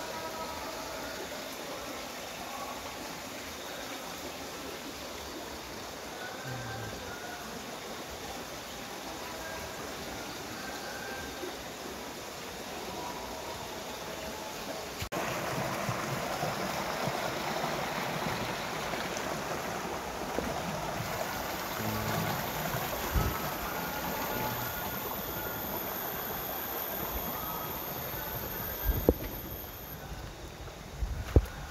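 Water running from pipes into fish ponds, a steady rushing flow that gets louder about halfway through, with short high tones scattered over it.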